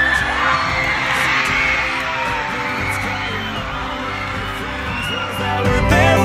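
Country-style song playing, an instrumental stretch with no sung words.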